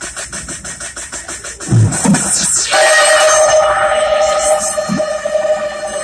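Electronic music starting up, first a fast ticking beat, then held synth chords coming in a little under three seconds in.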